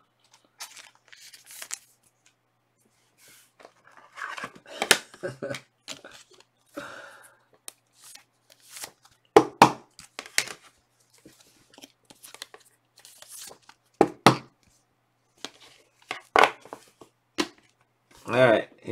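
Trading cards and clear plastic card sleeves being handled: intermittent rustling and sliding of card stock and plastic, with a few sharp snaps spread through.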